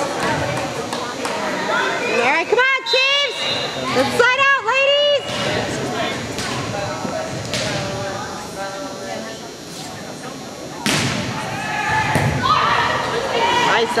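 Volleyball being struck in a gym: a few sharp thuds, the loudest about eleven seconds in as a rally starts. Earlier, about three and five seconds in, there are two spells of high-pitched shouting voices.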